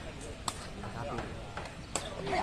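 Two sharp strikes of a sepak takraw ball being kicked, one about half a second in and one near the end, over faint voices.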